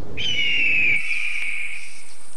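A bird of prey's long, slightly falling cry, starting just after the start and holding for almost two seconds. A thin, steady high whistle joins it about halfway through.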